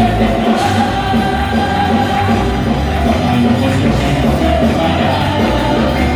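Live worship music in a church: a band playing with singing of a Spanish-language praise song, loud and steady.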